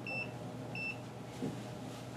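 Extech EX505 digital multimeter giving two short high-pitched beeps about half a second apart as its front-panel buttons are pressed.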